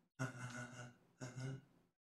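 A man's voice: two short, soft utterances of about half a second each.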